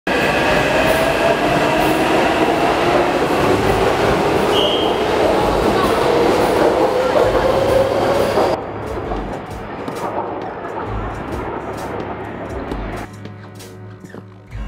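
Taipei Metro train on the Tamsui line pulling out of an elevated station: loud running noise with a whine that rises slowly as it gathers speed. About eight and a half seconds in, this gives way suddenly to quieter steady noise.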